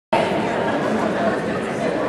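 Indistinct chatter of many spectators, steady, in a gymnasium.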